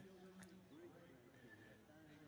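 Near silence: only faint background sound in a lull of the broadcast audio.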